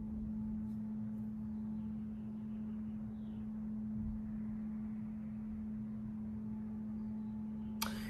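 Quiet room tone: a steady low hum with faint low rumble underneath, no other events.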